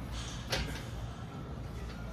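A single sharp slap about half a second in, as hands catch a steel pull-up bar when an athlete jumps up to it for a muscle-up. A steady low background rumble runs underneath.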